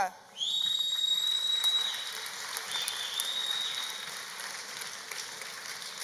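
An audience applauding, with two long high whistles at a steady pitch from the crowd over the clapping in the first few seconds. The applause slowly dies down.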